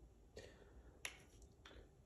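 Near silence, room tone, broken by three faint, short clicks spread evenly across the two seconds.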